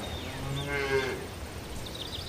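A cow mooing once, a single call of about a second, with birds chirping high above it.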